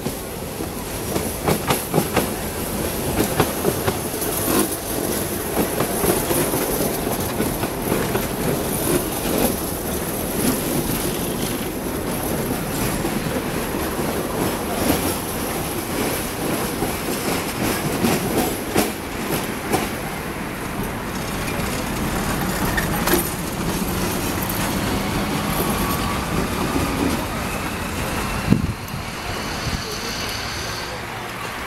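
Yellow Ganz tram rolling past on street track: a steady running rumble, with its wheels clacking over rail joints and points. A few sharp knocks stand out, one near the end.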